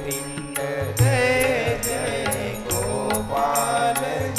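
Hindu devotional bhajan music: a sung melodic line over a steady beat of ringing cymbal strokes and drum beats.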